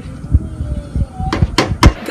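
A few sharp knocks: one about a third of a second in, then three in quick succession in the second half.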